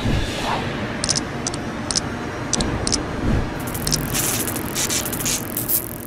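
Animated logo intro sting made of noisy sound effects: a whooshing static wash with short bursts of crackle, a deep hit at the start and another about three seconds in, then thicker crackling toward the end.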